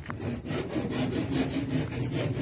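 Handsaw cutting wood, a quick run of repeated rasping back-and-forth strokes.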